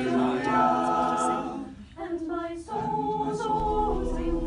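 A small mixed group of student singers singing a cappella in harmony, holding sustained chords. The singing breaks off briefly about two seconds in, then resumes on a new held chord.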